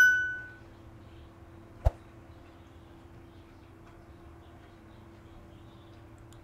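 A bell-like ding from a subscribe-button sound effect: one clear tone with overtones that fades within about half a second. About two seconds later comes a single sharp click, then only a faint steady hum.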